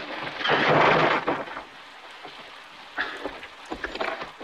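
Film soundtrack of a saloon fistfight: a loud rushing crash in the first second, then a quieter stretch with scattered sharp knocks near the end.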